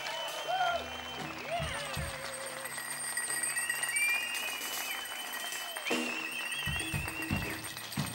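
Live band music in a percussion interlude. Short gliding, squeaky tones come in the first few seconds, then long held high tones, all over held low bass notes.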